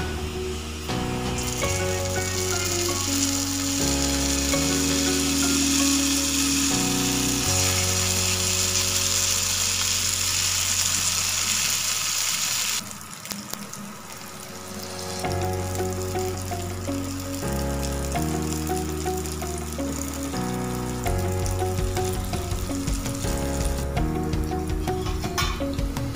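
Balls of idli batter deep-frying in hot oil in a steel pan: a steady sizzling hiss that cuts off abruptly about halfway through, under background music.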